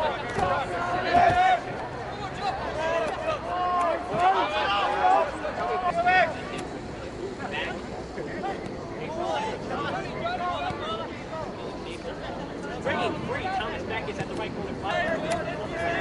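Voices on and around a soccer pitch calling out in short shouts through the whole stretch, over a background of crowd babble.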